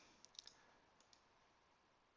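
Near silence with a few faint computer mouse clicks in the first second or so, as cells are selected and right-clicked.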